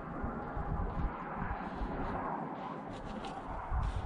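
Wind buffeting the microphone, easing off in the middle, with a few brief faint scrapes in the last second or so.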